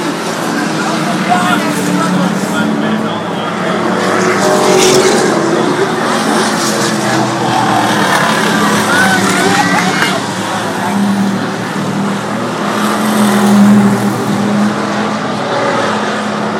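Race car engines running around an oval track, a steady drone that rises and falls as the cars pass and is loudest late on, with voices from the grandstand crowd over it.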